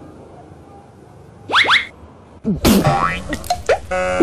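Comic sound effects: two quick rising boings about a second and a half in, then about a second later a sudden slapstick hit followed by short falling tones.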